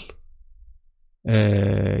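A man's long, steady hesitation sound, a held 'eh', starting a little over a second in after a quiet pause.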